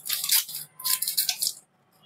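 A plastic packet of dark chocolate compound crinkling as it is handled and snipped open with scissors, in two bouts of rapid crackling.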